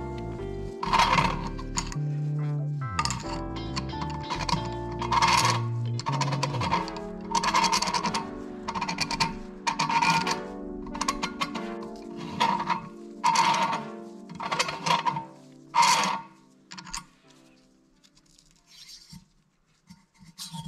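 A hand-turned Neway valve seat cutter scraping metal from an intake valve seat, in rasping strokes about once a second, over background music with sustained tones. The sound fades out about 17 seconds in.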